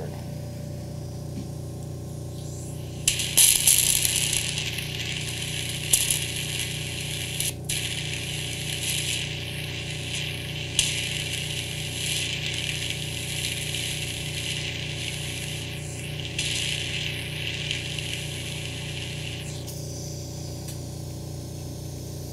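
Medical ear-suction unit running with a steady hum; about three seconds in, its fine suction tip in the ear canal starts drawing with a loud hiss that wavers and briefly dips, then cuts off sharply near the end. It is removing the lidocaine numbing medicine from the eardrum.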